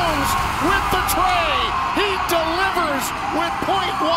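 Several voices shouting and whooping in excitement, celebrating a last-second winning basket, with a few sharp claps.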